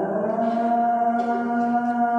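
A man's voice chanting the call to prayer (adhan), holding one long, steady melodic note.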